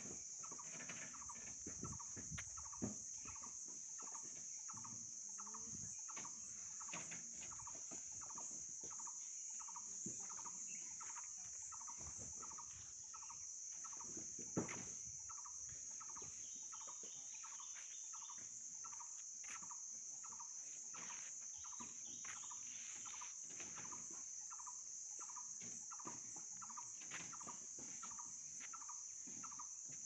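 Steady high-pitched insect buzz, with a bird repeating a short call note over and over, a little faster than once a second. Scattered faint knocks, with one sharper knock about halfway through.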